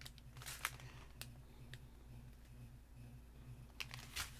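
A few faint crinkles and clicks of small plastic bags of diamond-painting drills being handled, over a low steady hum.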